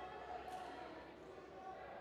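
Indistinct background chatter from spectators and coaches in a gymnasium, with one short knock about half a second in.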